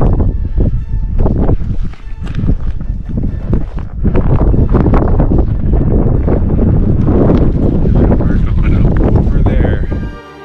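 Wind buffeting the camera microphone: a loud, gusty rumble that rises and falls, dipping briefly about two seconds in.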